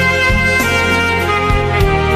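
Instrumental saxophone music: a saxophone plays a slow, held melody over a backing track with a steady bass line.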